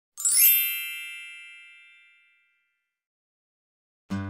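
A magical chime sound effect: a quick rising shimmer of bright tinkles that settles into one ringing chord, fading away over about two seconds.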